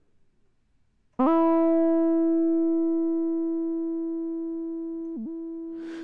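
Logic's ES M monophonic synthesizer sounding one sustained note, starting about a second in and slowly fading, with a brief dip in pitch near the end. The Hypercyclic arpeggiator is just holding the note instead of stepping through an arpeggio.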